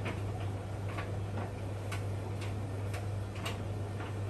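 A Beko WTK washing machine and an Indesit IDV75 tumble dryer running side by side: a steady low hum with light, fairly regular clicks about twice a second.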